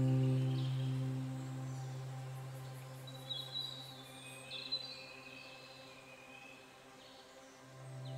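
Soft ambient background music: a low held note that slowly fades away, with a few short bird-like chirps around the middle.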